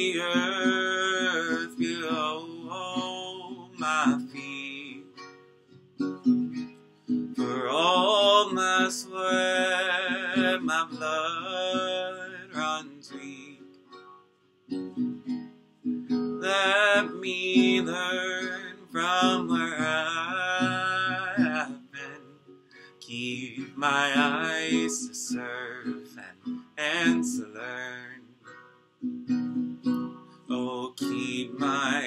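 A man singing a slow song to his own acoustic guitar, in long phrases with held notes that waver, and short breaks between the phrases.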